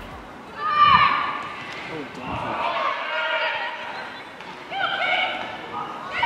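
Women footballers shouting and calling to each other on the pitch during open play, in short high-pitched calls; the loudest shout comes about a second in.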